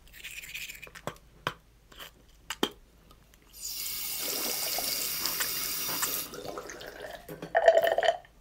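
A few light clicks and knocks, then a bathroom sink tap turned on with water running into the basin for about three seconds before it stops.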